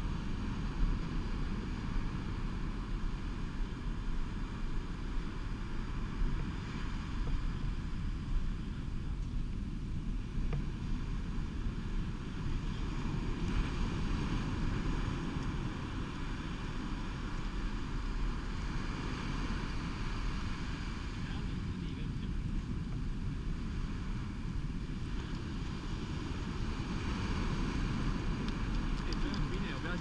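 Ocean surf washing up the beach, with a steady rumble of wind on the microphone.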